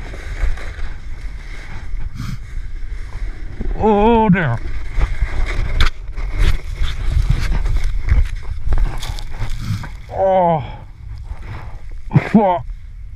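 A sled scraping and clattering over icy snow on a downhill run, with wind buffeting the microphone. Two drawn-out, wavering shouts, one about four seconds in and one near the end.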